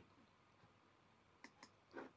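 Near silence broken by a few faint computer mouse clicks: two quick ones about one and a half seconds in and a slightly louder one at the very end, as a dialog is opened on screen.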